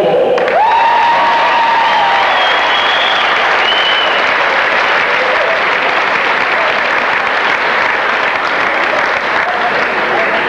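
Gymnasium crowd applauding loudly, with a few held calls from the crowd over the clapping in the first few seconds; the applause eases slightly near the end.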